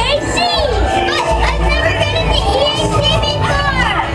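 Dark ride soundtrack: music under many overlapping high voices chattering and calling, with quick rising and falling squeaky glides.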